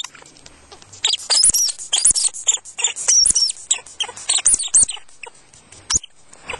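Norwegian lemming giving a rapid run of short, shrill squeaks, each arching up and down in pitch, from about a second in until near the end. These are the calls of an angry, hot-tempered lemming confronting the camera.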